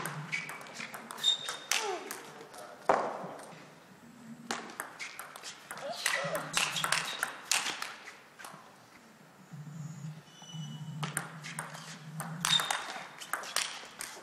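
Table tennis ball clicking off rubber-faced bats and the table in rallies, a string of sharp irregular ticks over the low hum of a sports hall.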